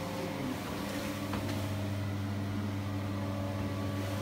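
Steady low mechanical hum of room machinery, holding one pitch throughout, with a faint click about a second and a half in.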